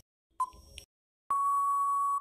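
Countdown timer sound effect: one last short electronic beep, then about a second later a long steady beep that signals time is up.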